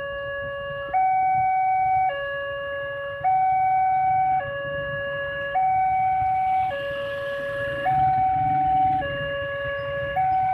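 Railroad level-crossing warning alarm sounding an electronic two-tone signal, a lower and a higher tone alternating about once a second, the higher tone louder. It means the barrier is down for an approaching train.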